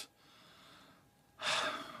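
A man takes a quick, audible breath in through the mouth, like a gasp, about one and a half seconds in. It follows a second of near-quiet room tone, and his voice starts again right at the end.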